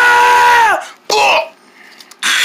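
A person's high, sustained vocal cry, held steady for under a second and then dropping away, followed by a second short vocal sound.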